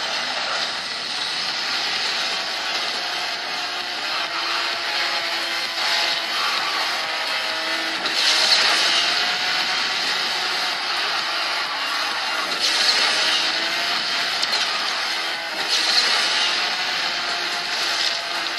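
Racing video game audio from a smartphone's small speaker: a sports car's engine running at high revs, its pitch slowly rising and falling, under a steady rush of speed noise. Brighter rushing surges come about eight, thirteen and sixteen seconds in.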